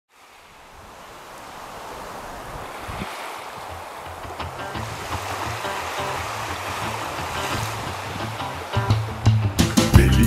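Surf washing on a beach, with some wind, fades in from silence. About halfway through, the instrumental intro of a song with a stepped bass line fades in beneath it and turns loud, with sharp percussion, near the end.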